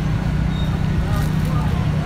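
Steady low rumble of road traffic and idling vehicle engines, with faint voices.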